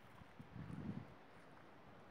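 Faint, muffled low thuds of a horse's hooves at a walk on soft, muddy grass, loudest in a cluster around the middle.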